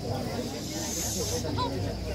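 A hiss lasts about a second near the start, over a background of people's voices.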